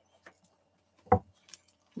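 Handling a deck of oracle cards: one short, sharp tap about a second in, with a few faint card rustles around it.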